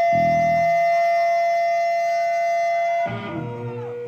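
Harmonica holding one long, steady note into a microphone, with a brief low chord from the band just after it starts. About three seconds in the note ends and the band's guitar and other instruments carry on.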